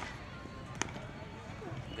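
Two sharp cracks of a cricket bat striking a cricket ball in practice nets: a loud one at the start and a fainter one just under a second later.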